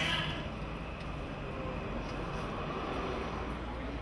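Music fading out in the first half-second, then a steady low rumble of background noise with no distinct events.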